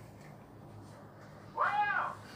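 A single short meow-like call, rising then falling in pitch, near the end, over a faint low hum.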